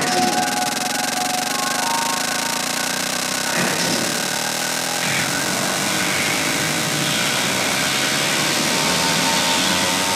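Techno track: a dense, harsh, noisy synth texture with a few held tones and no clear beat, steady in level.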